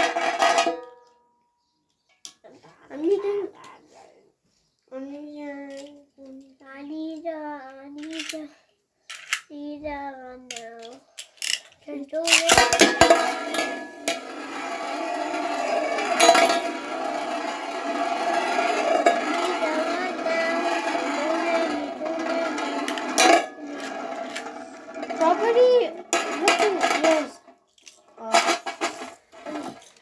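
Children's voices for the first several seconds. About twelve seconds in, two Beyblade spinning tops are launched onto a large metal tray and whir and scrape steadily against the metal, with a few sharp clashes, until the sound stops a few seconds before the end.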